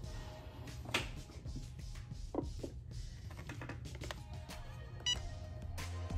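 Quiet background music, with a few soft knocks as the Cricut EasyPress heat press is handled and set down on the canvas, and a short electronic beep from the press about five seconds in.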